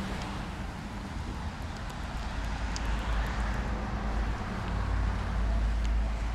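Road traffic going by on a wide city street: a steady hum of cars, with a low rumble that grows louder in the second half.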